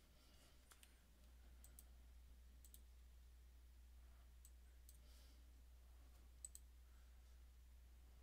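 Near silence: a faint steady low hum with a few scattered faint clicks, the strongest a quick double click late on.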